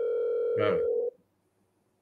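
Steady ringback tone of an outgoing phone call, played from a smartphone, cutting off about a second in, with a brief spoken word over it.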